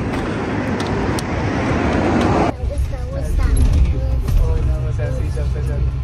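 A rush of road traffic noise swelling louder, cut off suddenly about two and a half seconds in, then the steady low rumble of a bus heard from inside, with voices over it.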